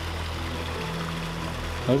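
Steady running water from a koi pond's water feature, under soft background music holding long notes.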